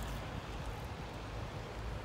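Steady outdoor background noise: a low rumble with a faint hiss over it and no distinct events.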